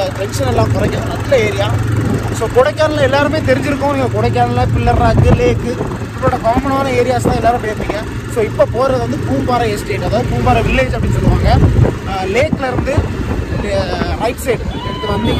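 A man talking over the steady hum of a motorcycle engine on the move, with wind rumbling on the microphone.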